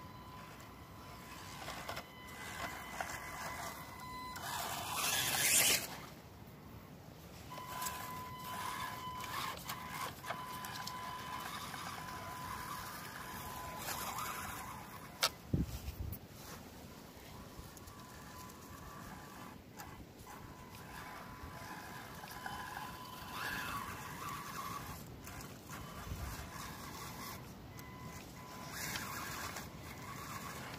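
Panda Tetra K1 RC crawler's small electric motor and drivetrain whining in spurts as it climbs slick, rain-wet dirt. About four seconds in, the whine drops in pitch and there is a brief loud rushing noise. A few sharp clicks come near the middle.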